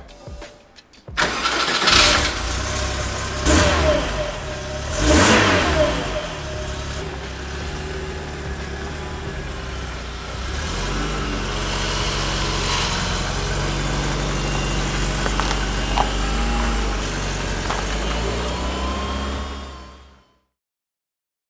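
A VW T25 van's newly swapped-in 2.0-litre four-cylinder petrol engine from a 1997 Golf GTI, breathing through a baffled 1.9 petrol silencer, starts about a second in. It is blipped up three times, then settles to a steady idle.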